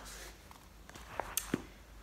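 Faint handling noises as a hardback book is set down on a pile of books and yarn: a few soft taps about a second in, over low room hum.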